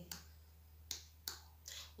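A few faint, unevenly spaced finger snaps over a low, steady electrical hum.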